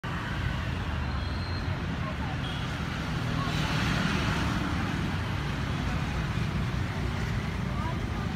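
Road traffic: a steady low rumble of passing vehicles, swelling for a second or so about halfway through as one goes by.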